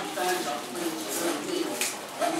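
A person speaking, with no other sound standing out.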